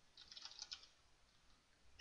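Faint computer keyboard typing: a quick run of keystrokes within the first second.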